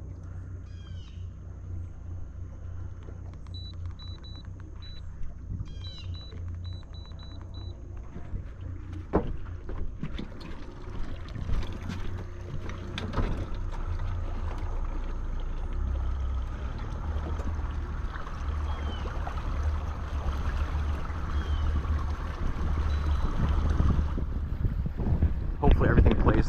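Boat-deck sounds with a steady low hum. Two short runs of high electronic beeps come a few seconds in, then knocks and handling noise, and from about halfway a louder steady mechanical noise builds up.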